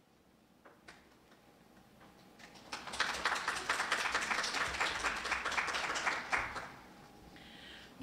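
Audience applauding: clapping begins softly about two and a half seconds in, holds full for a few seconds, then dies away near the end.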